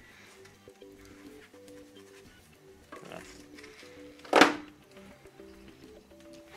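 Quiet background music of short melodic notes, with one loud knock about four and a half seconds in as a 6 V sealed lead-acid battery is set back down into its metal UPS battery tray.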